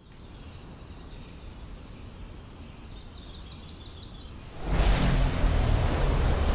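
Sound-designed ambience: a steady low wind-like rumble with a thin high tone and a few faint bird chirps. About four and a half seconds in, a loud rushing whoosh swells up and holds.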